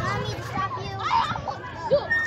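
Young children's voices at play: high-pitched calls and chatter, with no clear words.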